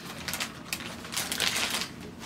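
Screen-protector kit packaging being handled and set aside: a run of light, irregular clicks and rustles.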